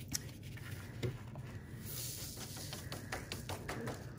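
Loose glitter being shaken and tapped off a sheet of construction paper onto a paper mat, a faint hiss of sliding glitter with small ticks and paper handling.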